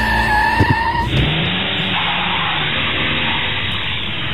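A car on the move: steady engine and road noise that comes in abruptly about a second in and runs on at an even level.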